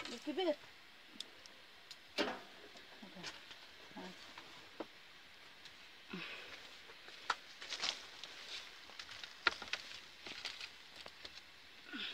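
Faint, scattered crackles and clicks from the wood fire burning in a clay bread oven, with a few low voices in the background.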